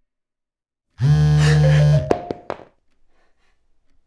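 A mobile phone going off: a loud, flat buzz for about a second, with a short rising electronic chime and a couple of sharp clicks as it dies away.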